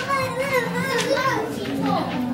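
Young children's voices talking and chattering.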